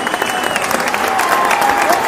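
Loud crowd applause: dense clapping with a high whistle early on, laid in as a sound effect.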